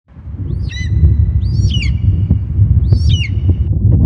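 Intro of a hip-hop track: a deep bass drone fades in, and three bird-like chirps sound over it, each swooping down in pitch and leaving a short held ringing tone.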